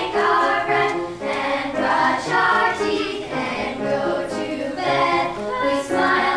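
A chorus of young girls singing together, with piano accompaniment.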